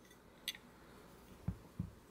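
Quiet handling of a metal vape box mod. There is a light click about half a second in, then two soft low thumps near the end as the mod is set down on the table.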